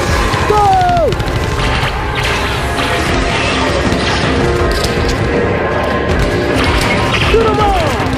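Loud soundtrack music and clattering sound effects of a shooting dark ride. Falling electronic sweeps come about half a second in and again near the end.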